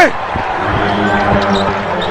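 Basketball bouncing on a hardwood court, a few unevenly spaced thumps over steady arena crowd noise with faint voices.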